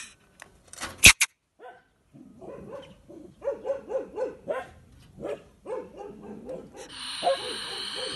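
A European polecat trapped in a wire cage trap calling in a fast series of short yapping chatters, several a second, then hissing near the end. A sharp clatter of the cage wire about a second in is the loudest sound.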